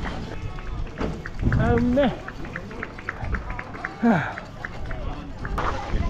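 People's voices in short calls, one falling in pitch about four seconds in. A fast, even ticking of about five a second runs through the middle.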